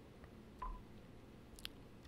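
Icom IC-7300 transceiver's key beep, a single short tone about half a second in as an item on its touchscreen is pressed, followed by a faint click near the end.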